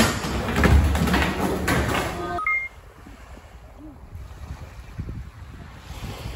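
Skateboards rolling on the concrete floor of an indoor skatepark, with knocks and clacks of boards. About two and a half seconds in, this cuts off abruptly, with a brief short beep, to a much quieter low rumble of small waves and wind on a beach.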